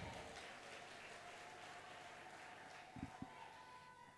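Faint applause from a congregation, dying away to a quiet hall, with two soft knocks about three seconds in.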